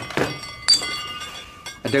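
Glassware clinking at a sideboard: a sharp knock, then a second strike about 0.7 s in that leaves the glass ringing for about a second, as a drink is poured and the decanter or tumbler is set down.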